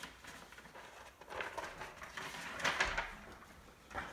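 A sheet of paper being handled and rustled in a few short bursts as it is lifted up.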